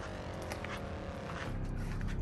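Faint hum of a passing vehicle, falling slowly in pitch, with a few light clicks.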